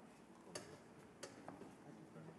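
Near silence: faint room tone with two short sharp clicks, about half a second and a second and a quarter in.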